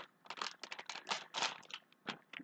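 Thin plastic crinkling in short, irregular bursts as a mason-jar-shaped plastic sticker pouch is handled.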